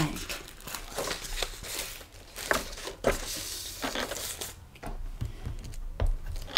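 Sheets of paper rustling and crinkling as they are lifted and shuffled by hand, with light clicks and taps of handling.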